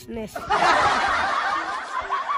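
Loud laughter breaks out about half a second in and keeps going.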